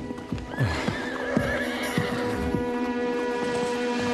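A horse whinnying with a wavering pitch, along with hoofbeats, over film-score music with long held notes.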